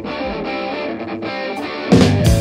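Electric guitar playing a riff on its own while the drums drop out. The full band with drums comes crashing back in near the end.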